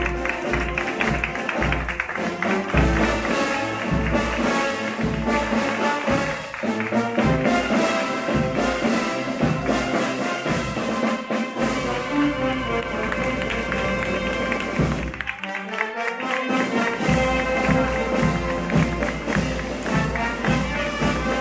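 A wind band with trumpets and trombones playing a festive march over a steady drum beat.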